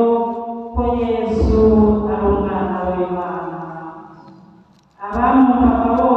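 Devotional chanting: long held sung notes that fade away about four seconds in, then the chant starts again loudly about a second later.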